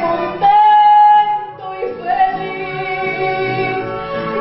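A woman singing a ranchera song with accompaniment, holding one long note about half a second in and another from about two seconds in.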